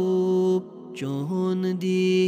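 Male voice singing a Kashmiri naat in long held notes. A sustained note breaks off about half a second in, and after a short breath a new phrase starts on steady notes.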